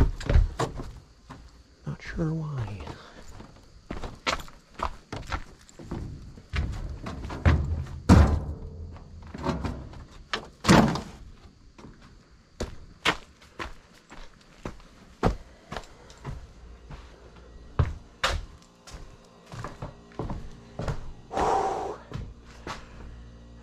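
A run of thunks and knocks as household junk is carried out and dumped into a metal roll-off bin, the loudest about eight and eleven seconds in.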